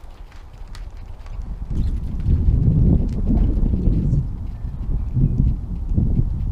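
Wind buffeting the microphone: a low rumble that builds about a second and a half in, is strongest in the middle and swells once more near the end.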